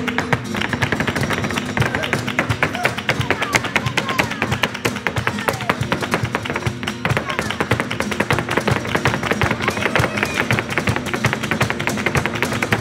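Flamenco soleá with a dancer's rapid footwork (zapateado): dense, fast heel-and-toe strikes over flamenco guitar.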